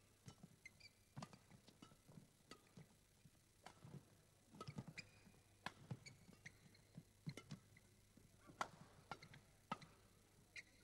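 Faint, irregular sharp clicks of badminton rackets striking the shuttlecock, with short squeaks of shoes on the court mat, during a rally.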